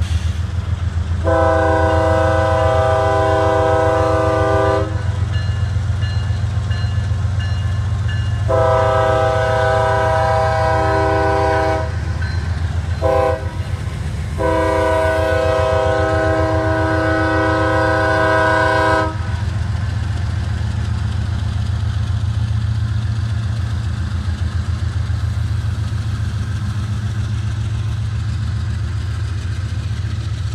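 Kansas City Southern diesel locomotive's multi-chime air horn sounding the grade-crossing signal: long, long, short, long. Underneath runs the steady rumble of the diesel engines as the train rolls past.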